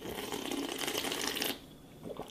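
A person slurping hot cocoa from a bowl: one long, crackly slurp of about a second and a half that stops abruptly.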